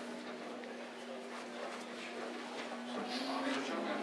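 Indistinct murmur of several men's voices in a small hall, with a steady low hum underneath; the voices grow clearer near the end.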